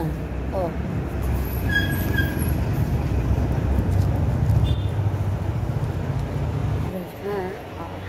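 A steady low rumble that fades out about seven seconds in, with a short spoken 'oh' near the start.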